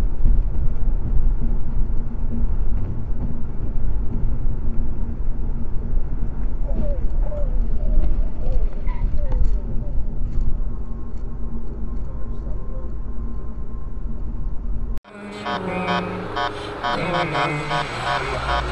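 Steady low rumble of road and engine noise inside a car at highway speed, picked up by a dashcam. About three seconds before the end it cuts off suddenly, and a different recording with pitched sounds begins.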